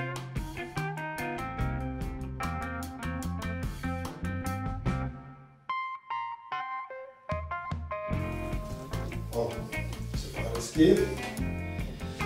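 Background music with a steady run of notes, thinning out to a few high notes for about a second and a half halfway through before the full music comes back.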